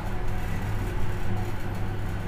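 Steady low electrical hum with an even background hiss.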